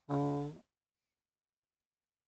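A man's voice holding a drawn-out hesitant vowel for about half a second as a sentence trails off, then dead silence.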